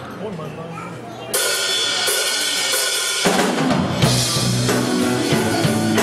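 Live rock band starting a song: after a short lull, drums and guitars come in suddenly about a second in, and the low end of bass and kick drum fills in about four seconds in.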